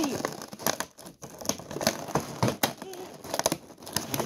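Cardboard box and inner packaging scraping and crinkling as a heavy boxed toy train set is worked out of its outer box: irregular rustles and scrapes with small sharp knocks.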